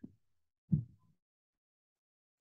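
A single short, low vocal sound, a brief murmur or syllable, about three quarters of a second in; otherwise near silence.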